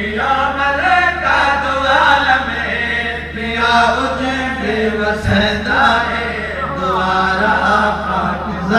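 A man's voice, amplified through a microphone and loudspeakers, recites in a melodic, chanted style with long sung phrases. A steady low hum runs underneath, and there is a single low thump a little past the middle.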